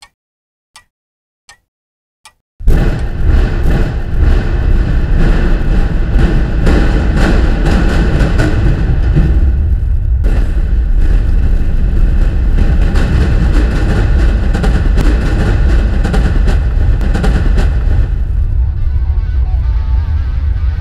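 A few faint ticks, then about two and a half seconds in a sudden, very loud high-explosive building demolition: a long, heavy rumble with many sharp cracks through it as the building comes down.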